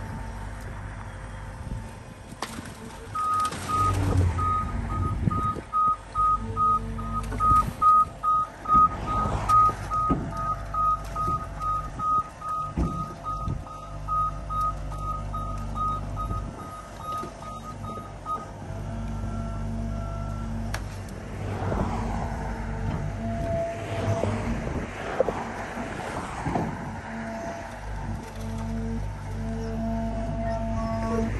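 Excavator warning alarm beeping steadily, about two beeps a second, over the steady low hum of the diesel engine; the beeping stops a little over halfway through.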